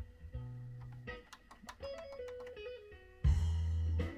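Guitar music playing back from a CD in a Denon DCD-1015 CD player, heard over speakers. The scratched disc plays through without skipping: nice and tight. About three seconds in, a loud low rumble cuts in for under a second.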